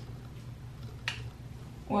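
A single faint, sharp click about a second in, over a steady low hum of room tone.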